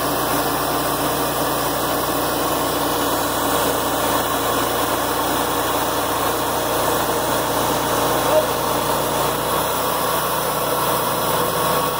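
Portable bandsaw sawmill running steadily: its gasoline engine holds an even speed while the band blade saws lumber from a poplar log.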